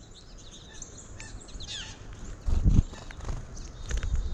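Wild birds chirping, with a quick series of falling whistled notes about one and a half seconds in. A low rumbling thump about two and a half seconds in is the loudest sound.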